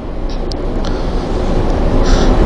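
Steady low rumbling background noise with no voice, growing gradually louder, with a few faint brief clicks in the first second.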